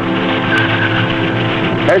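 A steady, loud drone: a low hum with several held tones above it, unchanging in pitch, until a man's voice comes in at the very end.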